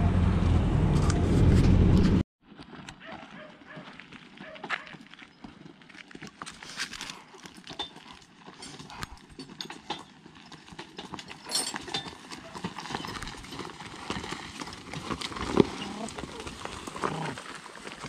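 Hooves of a draft horse clopping on a gravel road as it pulls a cart, an irregular run of knocks. A loud low rumble fills the first two seconds and stops abruptly.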